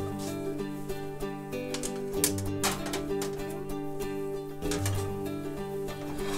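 Background music: an acoustic guitar playing plucked notes.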